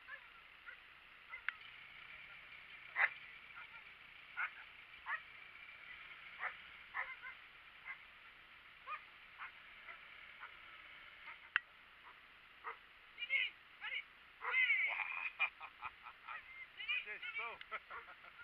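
Short, high-pitched honking animal calls, scattered at first, then coming thick and fast, rising and falling in pitch, over the last five seconds.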